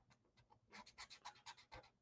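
Faint scratching of a pen scribbling on paper, a quick run of short strokes in the second half, filling in dark areas of a drawing.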